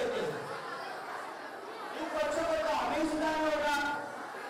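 A voice speaking into a handheld stage microphone, amplified through a PA; it is quieter in the first half and the talk picks up about two seconds in.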